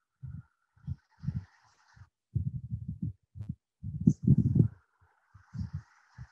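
Stylus writing on a tablet, picked up by the microphone as irregular low thuds with a faint scratchy hiss.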